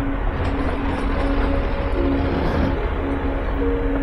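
Triumph Tiger 1200's three-cylinder engine running steadily under way on a gravel road, with tyre and wind noise and a steady engine hum that shifts in pitch near the end.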